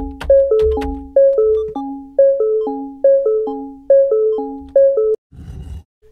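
A keyboard-like software instrument patch ("Water Dope") in FL Studio playing a looping beat: a short repeating figure of plucked, quickly decaying notes with a strong accent about once a second, over a low bass in the first two seconds and again near the end. The loop stops suddenly about five seconds in.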